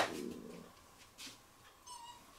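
A puppy whimpering faintly as it waits at its food bowl: a sharp, short sound at the very start, then a brief high whine near the end.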